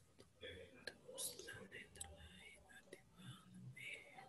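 Faint, low murmured speech, close to a whisper, with a few soft clicks in between.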